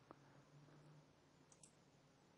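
Near silence with two faint computer mouse clicks, one just after the start and one near the end.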